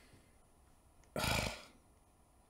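Near silence, broken a little past halfway by a man's short, breathy vocal sound lasting about half a second.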